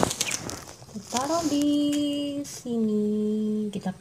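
A woman humming two long held notes, the first sliding up into a steady pitch and the second a little lower. A brief rustle of the wallpaper sticker sheet being handled comes at the very start.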